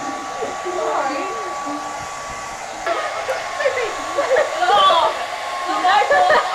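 Handheld electric hair dryers blowing steadily, a continuous airy rush with a steady whine. About three seconds in the sound shifts and grows a little louder.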